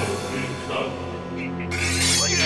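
Dramatic film score music with sustained, held low tones under a tense standoff.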